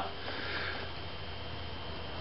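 A man sniffing softly through his nose during a pause in talk, over a steady low hum.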